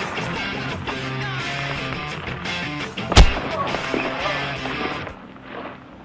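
Background music with held notes, and one loud, sharp punch-like smack about three seconds in. The music drops away about a second before the end.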